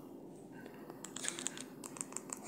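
Faint, quick clicks starting about a second in: TV remote buttons being pressed to type a channel number.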